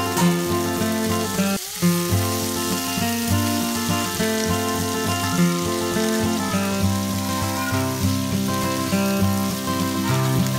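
Background music over chopped ivy gourd frying in oil in a pan, a steady sizzle beneath the tune. The music breaks off briefly about two seconds in.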